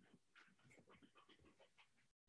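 Near silence: faint room tone with a few soft, irregular ticks and breathy noises.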